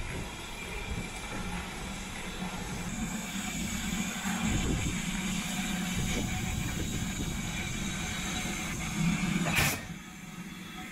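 BR Standard Class 4 2-6-0 steam locomotive No. 76017 at low speed and then standing, with a steady hiss of steam over a low steady rumble. A short sharp bang comes near the end.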